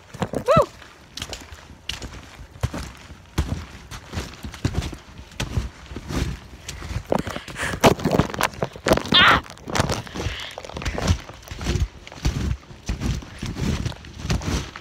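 Irregular thuds and crunches of a person bouncing and moving about on a snow-covered trampoline mat. Two short vocal exclamations come through, one about half a second in and one around the middle.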